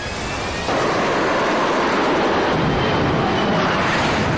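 Jet engine of a Harrier jump jet running at full power as the aircraft takes off, a loud steady rushing noise that steps up sharply just under a second in.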